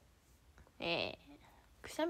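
A young woman's voice: a short exclamation falling in pitch about a second in, with a little laugh, then she starts speaking again near the end.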